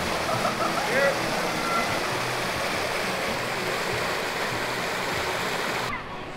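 Steady rush of running water, with faint voices in the first two seconds.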